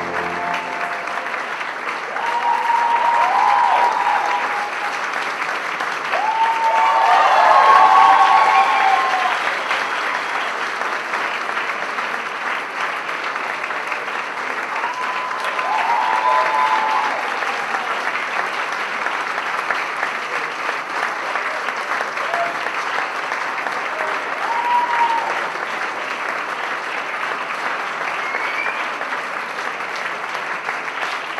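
Sustained audience applause, with a few louder swells where voices cheer over the clapping. Music cuts off about a second in.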